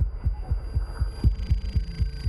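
Suspense background score: a low, heartbeat-like pulse of about four thumps a second over a steady drone.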